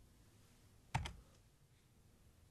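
A single computer keyboard keystroke about a second in, most likely the key press that runs the highlighted SQL query.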